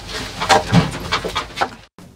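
Several short, breathy whimpers in quick succession that stop abruptly near the end.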